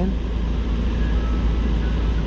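Low, steady rumble of street traffic and vehicles on a city street, with a few faint thin tones in the second second.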